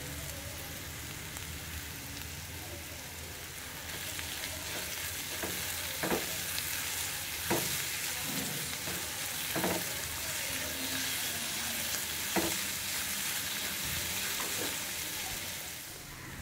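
Sliced onions and garlic sizzling in hot oil in an aluminium kadai, a steady hiss that grows a little louder about four seconds in. A spatula stirs them, clicking against the pan about five times.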